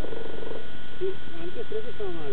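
Muffled, indistinct talking under a steady hiss from the camera's microphone, with a short buzzy rattle at the start.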